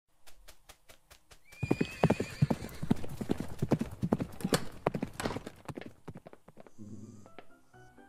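Hoofbeats of a donkey clip-clopping at a walk, about four to five a second, then a whinny-like cry about a second and a half in and fast, loud clattering hooves as it breaks into a chase. A short run of rising musical notes comes in near the end.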